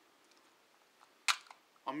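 A clear plastic box of .22 LR cartridges handled in the hands: one sharp click about a second in, with a couple of fainter clicks around it. A man starts speaking right at the end.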